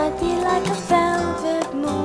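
Music from a 1976 vinyl LP by a college vocal and instrumental group: a song with held, changing notes over instrumental accompaniment, playing continuously.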